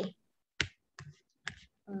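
Three short, sharp clicks about half a second apart, the first the loudest, from a computer being operated during a video call.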